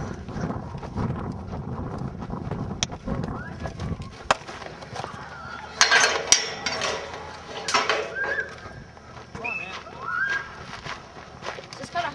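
A fence rattling, with several sharp clanks, as someone climbs onto it, and faint voices in the background.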